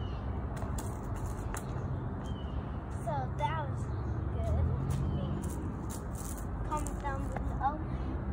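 A girl makes short wordless voice sounds, once about three seconds in and again near the end, over a steady low outdoor rumble, with a few faint clicks.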